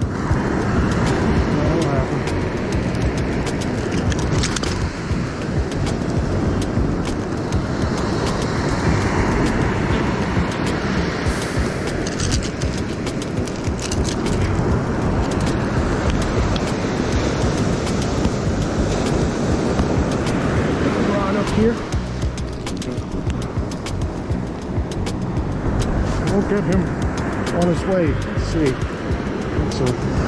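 Continuous rushing roar of surf and wind at the water's edge, loud and unbroken, with a few faint voice sounds near the end.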